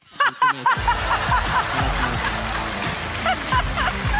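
Laughter from the audience and a woman's hearty laugh right after a punchline. Show music comes in under the laughter about a second in and carries on.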